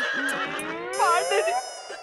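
Comic horse-whinny sound effect: a wavering high cry that breaks into rising and falling glides. A bright shimmering chime joins about a second in.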